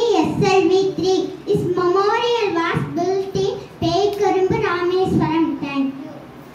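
A young girl singing into a handheld microphone, one continuous run of held notes in a steady sung line.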